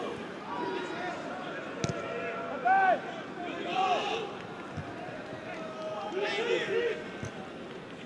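Football match ambience from the pitch: a steady crowd murmur with a few short shouts from players, and one sharp knock about two seconds in.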